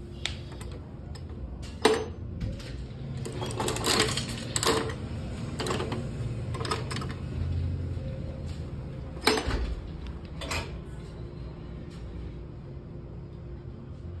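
Metal crank of a coin-operated capsule toy vending machine being turned, giving a series of sharp clicks and clunks, with a cluster about 4 seconds in. The metal delivery flap clacks as it is handled later on.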